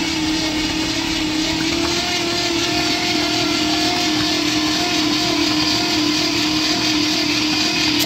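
An electric starter motor cranking over the freed-up AMC 304 V8, a loud, steady whine that holds one pitch throughout, with the engine spinning but not catching.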